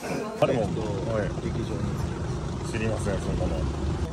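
People's voices in casual chatter, with a low rumble underneath that grows stronger in the second half.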